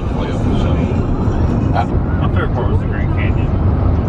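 Steady low road and engine rumble inside a minivan's cabin at highway speed.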